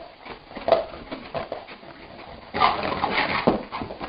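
A dog whimpering in its sleep with short yips, then louder whining from about halfway through.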